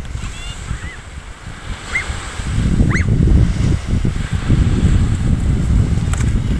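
Wind buffeting the microphone over the wash of small waves breaking on a sandy shore, growing louder about halfway through. A few short high rising calls, like chirps or squeals, sound over it in the first half.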